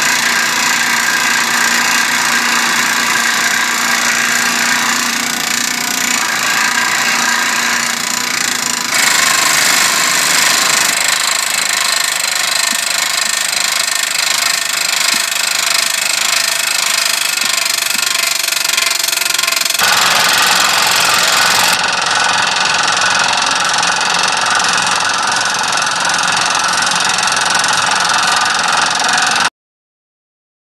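Excavator-mounted hydraulic telescopic drill rig (Morath TBT-AK33) running, its hammer drilling a self-drilling anchor, a loud steady mechanical noise. The sound changes abruptly a few times and cuts off just before the end.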